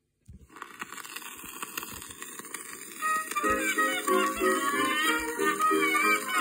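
Playback of an old 1928 record: hiss and crackle of the disc surface, then the instrumental introduction of the song comes in about three seconds in.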